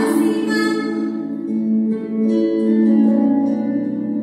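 Slow background music with long held notes.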